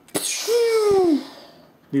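A short non-speech noise from a person's mouth and nose: a sudden hiss with a falling voiced tone running under it, together lasting about a second and a half.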